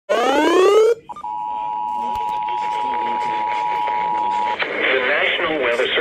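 A rising swept tone lasting about a second, then the Emergency Alert System two-tone attention signal, a steady pair of tones held for about three seconds. It is an FM radio station's EAS broadcast announcing a severe thunderstorm warning, heard through a scanner radio's speaker, and an announcer's voice follows near the end.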